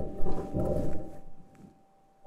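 Perseverance Mars rover's wheels rolling over rocky ground, as recorded by the rover's own microphone: a light, irregular crunching and rattling over a thin steady tone, fading away about a second and a half in.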